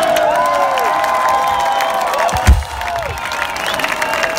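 A concert crowd cheering, many voices holding long high yells that slide down as they end. A single low thump about two and a half seconds in.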